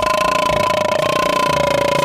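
A steady, held tone sounding at two pitches together, drifting slightly lower toward the end.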